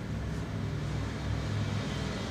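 A steady low hum with an even background hiss.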